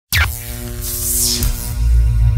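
Electronic intro music that starts suddenly with a quick downward sweep over a deep pulsing bass, with a whooshing swell about a second in.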